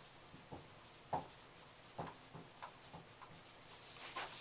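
Dry-erase marker writing on a whiteboard: faint, short separate strokes with small gaps between them.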